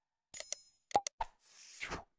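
Motion-graphics sound effects for animated on-screen text: a short ringing chime, then three quick pops, then a whoosh that builds near the end.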